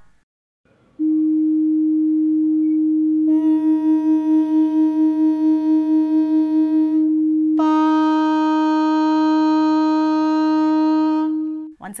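A steady, pure reference tone sounding the note Pa of the Sa-Pa-Sa exercise, with a woman's voice humming along on the same pitch twice, about three seconds in and again about halfway through. During the first hum the two pitches waver against each other about four times a second, the beat of a hum not yet exactly matched to the tone.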